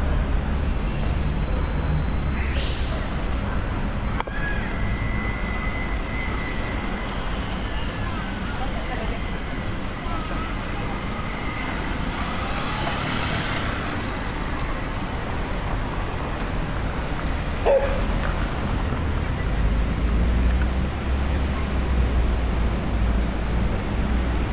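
City street ambience: steady traffic noise from passing cars, with indistinct voices of passers-by. A single sharp knock comes a little past two-thirds of the way through.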